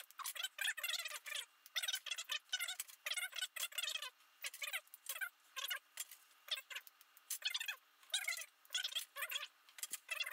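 Water at a rolling boil bubbling in a saucepan, in quick irregular bursts of popping and gurgling.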